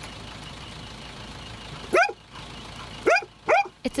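A large dog barking three times, short single barks about a second apart, over faint steady outdoor background noise.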